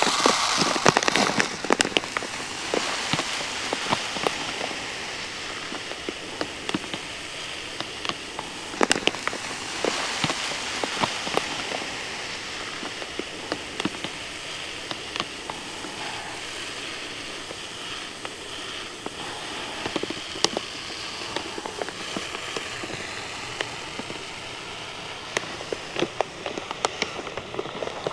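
Granular lawn fertilizer (Scotts Turf Builder UltraFeed) pouring from its bag into a broadcast spreader's plastic hopper: a steady hiss of granules pattering, with scattered crackles, a little louder in the first couple of seconds.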